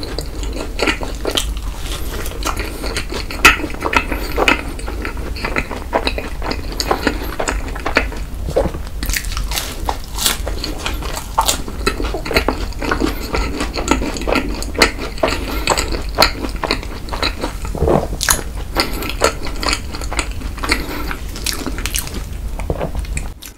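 Close-miked chewing of a crisp waffle filled with whipped cream: many small crunches and wet mouth clicks, steady throughout.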